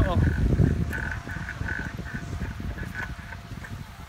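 Wind buffeting the microphone and the rolling of a pedaled three-wheeled bike, a low rumble that is loudest in the first second and then eases, with a faint high-pitched chirp repeating every few tenths of a second.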